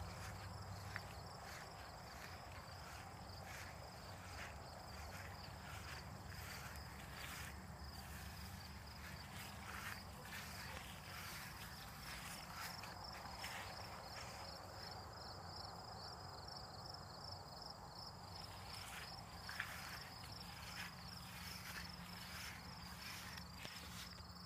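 Faint, steady chirping of crickets in the grass, a high pulsing trill that runs on without a break, with the soft scuff of occasional footsteps on grass.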